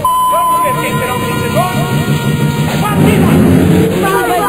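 Tamiya Mini 4WD toy racing cars running on a plastic track, a small electric-motor whirring that grows louder and rises in pitch near the end, under children's voices shouting. A steady high tone sounds over the first two seconds.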